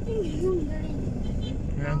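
Steady low rumble of road traffic passing on the street.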